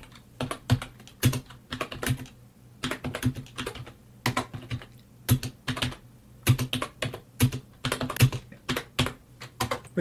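Keys being typed on a computer keyboard in short, irregular bursts of clicks with brief pauses, as hex byte values are keyed into a machine-language monitor.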